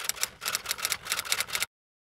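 Typewriter keystroke sound effect, a rapid run of clicks about seven a second, matching an on-screen title typing out letter by letter. It cuts off suddenly into silence near the end.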